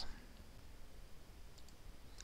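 Faint computer mouse clicks near the end, over quiet room tone.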